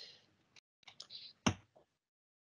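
A few short clicks from the presenter's computer, the loudest about one and a half seconds in, separated by stretches of cut-out silence on a video-call line.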